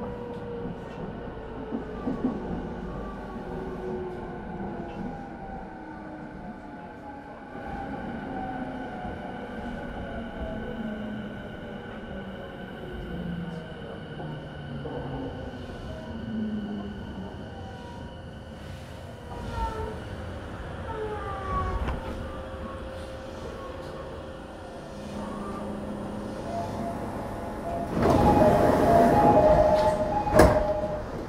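Onboard running sound of an E217-series electric train motor car. The Mitsubishi IGBT VVVF inverter and traction motors whine in several tones that fall steadily in pitch as the train brakes into a station. Near the end comes a loud hiss with a squeal as it comes to a stop.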